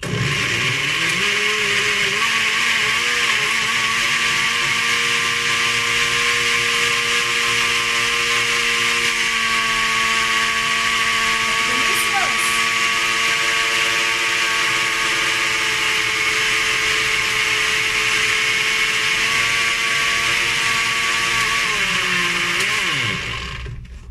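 Countertop blender motor running at full speed, blending a liquid protein shake. Its pitch climbs as it spins up in the first couple of seconds, holds steady, then drops as it winds down about a second before the end.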